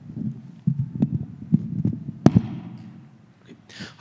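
Microphone handling noise: a run of dull thumps and knocks, with one sharp knock a little over two seconds in as the loudest.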